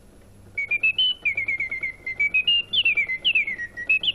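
Antique clockwork singing-bird cage whistling a tune: bellows blow a small brass swanee whistle whose sliding rod varies the pitch. It gives quick chirping notes that step up and glide down, starting about half a second in.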